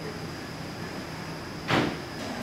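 Quiet room tone with a faint steady high-pitched hum, broken near the end by one brief rush of noise lasting about a fifth of a second.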